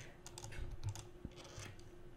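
A few faint key presses on a computer keyboard, typing an equals sign into a spreadsheet cell.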